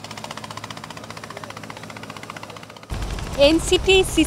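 Engine of a wooden motorboat running with a fast, even knocking beat. About three seconds in, a man's voice starts over it.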